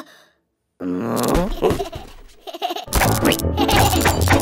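A brief silence, then a cartoon character giggling in short squeaky sounds, then cartoon music with a steady bass starts about three seconds in.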